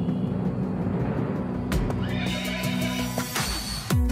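Background music with a horse whinny over it, starting about two seconds in and falling in pitch, with a sharp hit just before it.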